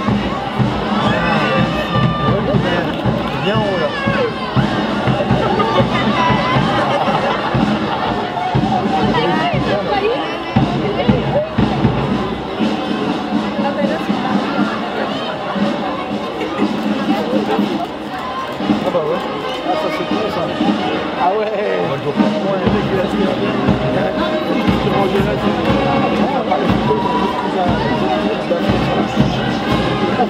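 Crowd of spectators talking, with music playing.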